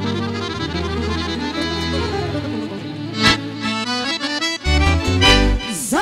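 A chromatic button accordion plays fast melodic runs in a Roma folk tune, backed by a bass line, with a few sharp percussive hits in the second half.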